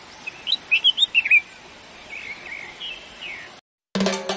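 Small birds chirping over a steady outdoor hiss, with a quick run of loud chirps about a second in and fainter calls later. The sound cuts off suddenly just before the end.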